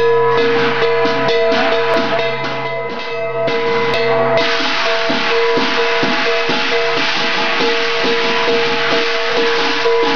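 Percussion accompaniment for a qilin dance: rhythmic drum beats with cymbals, over steady ringing tones. About four seconds in, the cymbals turn into a continuous crashing wash.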